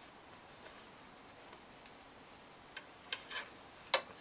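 Cotton fabric being handled and rustled as a sewn face mask is turned right side out and its corners pushed out with a pointed tool, with a few short clicks and scrapes, the sharpest just before the end.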